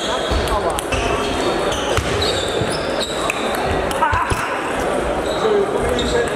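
Table tennis rally: the celluloid-type ball clicking sharply off bats and the table, several times a second at irregular intervals. Short high squeaks, likely shoes on the hall floor, sit over the constant background chatter and play from other tables in a reverberant sports hall.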